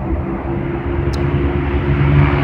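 Steady drone of a motor vehicle's engine with road noise.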